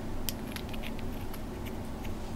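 A few faint, light clicks and ticks of small metal parts being handled: a low-profile gas block and a hex key against a gas block dimple jig, over a low steady room hum.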